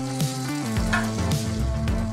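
Pieces of wagyu beef sizzling on a hot pan as they are turned with a spatula, over background music with held notes.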